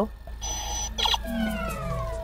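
Electronic beeps: a steady high tone about half a second in, a short blip, then a tone that falls steadily in pitch, like an error or power-down signal, as a wrong time is keyed into a DeLorean-style time-circuit display.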